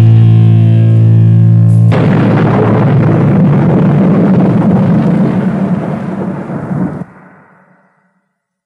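Ending of a thrash metal track on a 1985 cassette demo: a held, distorted guitar chord, then about two seconds in a loud crashing, noisy finale that fades and cuts off about seven seconds in, with a brief tail dying away just before the end.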